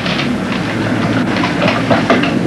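Steady mains hum and hiss of a worn analog film soundtrack, with scattered crackle.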